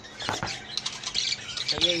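Budgerigars calling in a breeding cage: a rapid run of short, high chirps and squawks.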